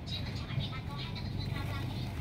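Hill myna giving short, speech-like calls and whistles over a steady low rumble.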